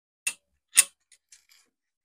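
Small sharp clicks and ticks of a dropped screw being fished out of the opened EcoFlow River power station's plastic case: two louder clicks about half a second apart, then a few faint ticks.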